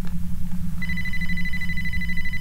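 A phone ringing: one steady electronic ring tone that starts just under a second in and holds without a break, with a steady low hum underneath.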